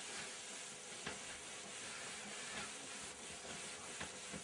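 Faint, soft rubbing of a cloth wiping chalk off a blackboard, over a steady hiss, with a few small ticks.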